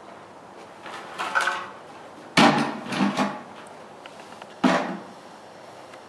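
A few separate knocks and thumps from a rider stepping up onto a mounting block to mount a saddled horse. The loudest, sudden one comes about two and a half seconds in, and another about two seconds later.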